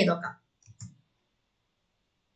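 The end of a spoken word, then two faint clicks about a quarter second apart, then silence.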